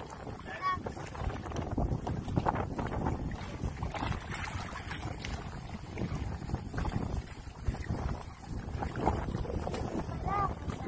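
Wind buffeting the phone's microphone over open sea, with water splashing against the boat's side as a loggerhead sea turtle is lowered into the water. Brief voices.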